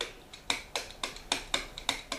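A pen tip tapping and clicking against a board surface as a word is handwritten, about ten short, irregular clicks.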